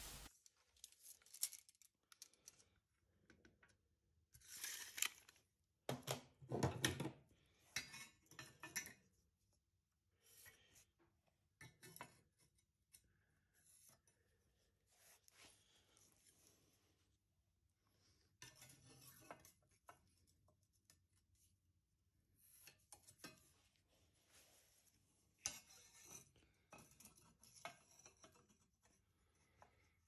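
A combination square being set down and slid on steel angle, and a marker pen drawing lines on the steel. The sound comes as scattered short scrapes and clicks, loudest a few seconds in, with quiet gaps between.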